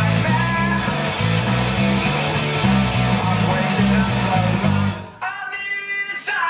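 Electric bass playing a driving rock bass line over a recorded rock band backing track. About five seconds in, the bass and low end drop out, leaving only the higher instruments for a moment.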